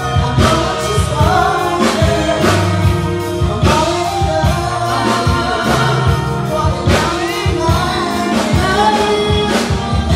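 A church worship team of several singers, men and women, singing a gospel song together over a band with drums and bass.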